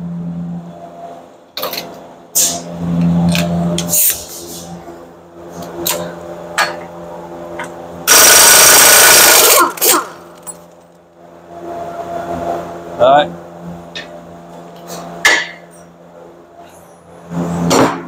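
Air impact wrench hammering on the 32 mm rear axle nut of the hub for about a second and a half, partway through; it is much the loudest sound. Scattered metal clinks and knocks of the socket and tools being handled come before and after.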